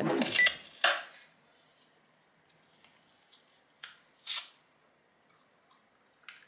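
A woman's short laugh, then a quiet room with a few faint rustles and two short, noisy handling sounds a little under halfway through.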